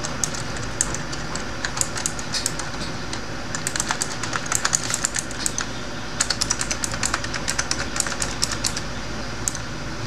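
Typing on a computer keyboard: irregular runs of quick keystrokes, thickest around the middle and latter part, over a steady background hiss.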